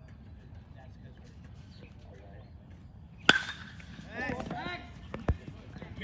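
Baseball bat hitting a pitched ball about three seconds in: a sharp crack with a brief ringing tone. Voices shout right after, and a short thump follows about two seconds after the hit.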